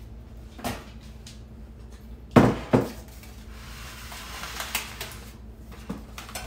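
Kitchenware knocking on a countertop as a glass measuring jug and other items are set down: two sharp knocks close together about two and a half seconds in, with lighter knocks before and near the end.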